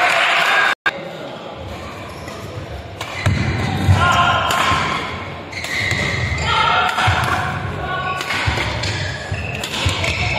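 Badminton doubles rally on an indoor court, starting about three seconds in: sharp racket strikes on the shuttlecock and court shoes squeaking, with voices in the hall. Just under a second in, the sound cuts out for a moment.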